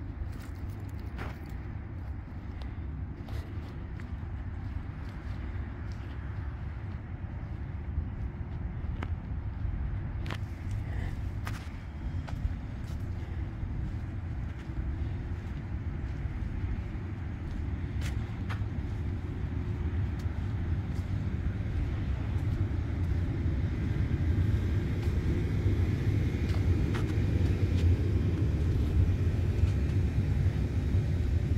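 Steady low outdoor rumble that grows louder toward the end, with a few faint clicks scattered through it.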